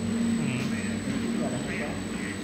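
A rice noodle sheet machine (máy tráng mỳ) running with a steady low hum, with voices talking over it.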